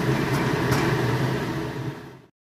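Steady low hum with a rushing noise over it, fading near the end.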